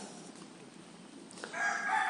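A long, steady bird call that starts about one and a half seconds in, over quiet room tone.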